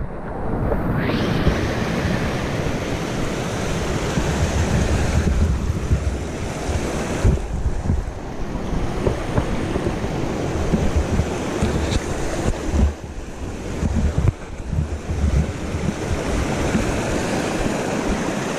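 Small mountain brook rushing and splashing over boulders in a steady rush, with wind buffeting the microphone and adding a low rumble.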